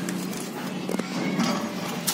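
Footsteps and knocks on the steel floor of a locomotive's walkway and cab doorway, with a couple of sharp knocks about halfway through, over a steady low hum.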